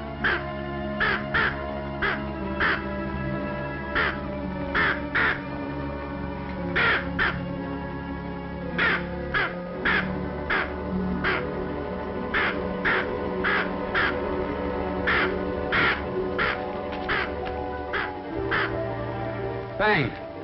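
Orchestral film score holding sustained dramatic chords, cut through again and again by short, harsh crow-like caws, often in pairs; the low bass note changes near the end.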